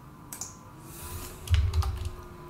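Computer keyboard keys being pressed: one sharp click about a third of a second in, then a quick cluster of three or four louder key presses with dull thuds near the end.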